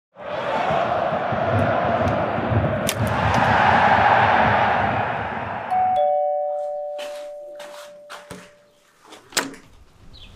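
Football stadium crowd noise that cuts off abruptly about six seconds in. It gives way to a two-note doorbell chime, high note then lower, each note ringing on and fading, followed by several short knocks.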